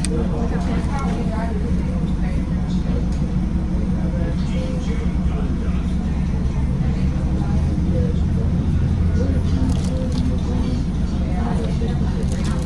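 Car engine idling: a steady low hum inside the cabin, with faint voices in the background.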